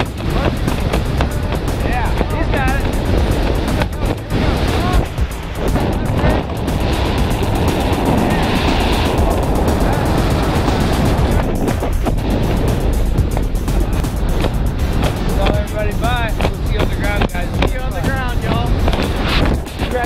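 Freefall wind rushing over the camera microphone in a tandem skydive: a loud, dense, continuous low rush. It drops away abruptly at the very end as the parachute opens.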